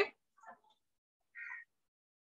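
Near silence in a pause between spoken words, broken only by the tail of a word at the start and a brief faint noise about one and a half seconds in.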